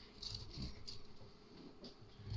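Faint soft rustling and patter of chopped raw vegetables being handled in a plastic bowl and dropped into a glass jar, with a light tick near the end.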